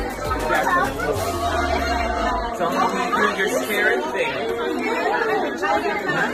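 Several people chattering at once in a busy room over background music with a deep bass line. The music cuts off about two and a half seconds in, leaving only the chatter.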